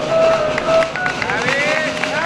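Speech: voices talking, their words not made out.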